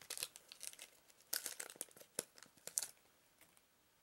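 Foil booster pack wrapper crinkling and tearing as a trading-card pack is opened, in quick crackly bursts that stop about three seconds in.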